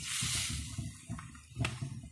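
Besan batter sizzling on a hot oiled pan as a ladle spreads it. The sizzle fades after about a second, and a single sharp click comes near the end.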